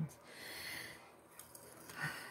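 A person's short breathy exhale, like a sigh or soft laugh through the nose, swelling and fading in under a second. A couple of faint small clicks follow.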